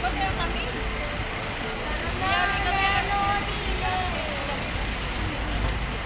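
Steady low rumble of road traffic and vehicles, with people's voices talking nearby; one voice is clearest from about two seconds in to past the middle.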